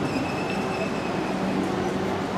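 Steady hiss of room and sound-system noise with a faint, steady high-pitched whine.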